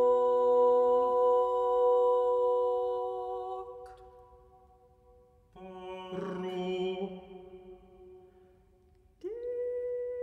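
An a cappella quartet of soprano, alto, tenor and bass holding long, steady chords without vibrato. The first chord dies away about four seconds in. After a near-silent pause, a second chord enters with a breathy attack and fades. A third chord enters just before the end, sliding briefly up into pitch.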